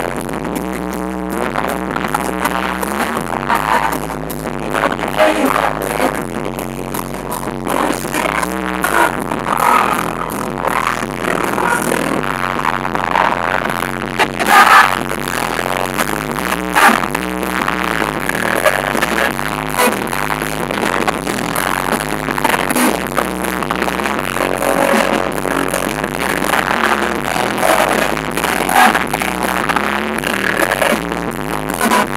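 Live amplified band music with several singers on handheld microphones singing together, heard through the stage sound system, with a few louder peaks about halfway through.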